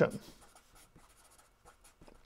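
A marker pen writing on paper: faint, short, irregular strokes as a line of words is written.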